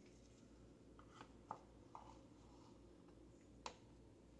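Near silence: room tone with a low steady hum and a few faint soft clicks, from a tint brush working bleach through wet hair and touching a plastic mixing bowl.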